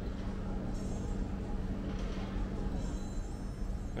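A steady low hum with a faint even hiss, the background noise of a large indoor hall; no distinct event stands out.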